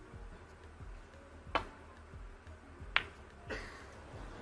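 Snooker cue tip clicking against the cue ball, then about a second and a half later the cue ball clicking sharply into a red, followed by a softer knock. The red is overcut and the pot is missed.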